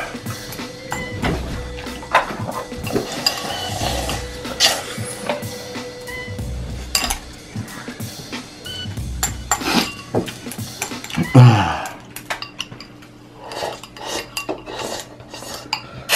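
Wooden chopsticks clicking and scraping against a ceramic bowl in many quick, irregular taps as the last spicy ramen noodles are gathered up.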